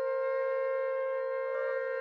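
Ceremonial horns blown together in one long, steady held note, sounded on the call to blow the trumpets.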